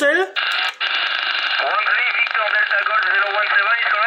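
Single-sideband radio reception from an 11-metre transceiver's speaker: a thin, narrow-band voice from a distant station, weak and half-buried in steady hiss and static. The hiss opens just after the start, breaks off briefly before the first second, then runs on with the faint voice.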